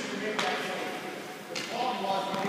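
Indistinct voices echoing in a large rink, with one sharp knock or scrape about half a second in.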